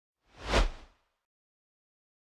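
A single whoosh sound effect of a logo reveal, swelling up and dying away within about half a second.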